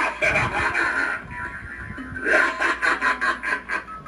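A clown Jack-in-the-box animatronic playing its recorded routine through its built-in speaker: a drawn-out, menacing laugh in quick pulses over its little tune.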